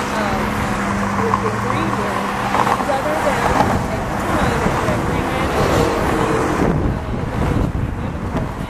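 A woman speaking over steady road-traffic noise, with a low vehicle hum in the first few seconds and some wind on the microphone.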